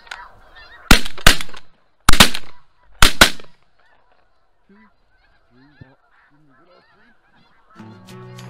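Snow goose calls, then a volley of shotgun blasts, about six shots in three quick pairs within the first few seconds, as the hunters open fire on the geese. Thin goose calls carry on faintly after the shooting.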